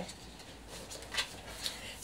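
Quiet handling of a packaging box and a card: a few soft taps and rustles about a second in.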